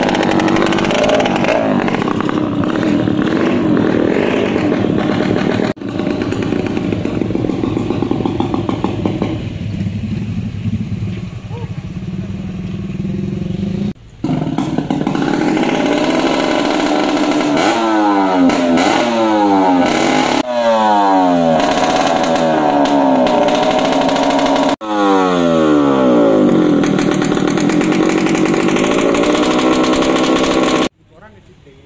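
Motorcycle with a knalpot brong, a loud open aftermarket exhaust, running hard and then revved in repeated quick throttle blips that rise and fall in pitch through the second half.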